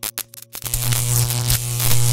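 Electronic intro sting: a quick stutter of short clicks and cut-off bursts, then from about half a second in a steady low electronic hum under a hiss of static.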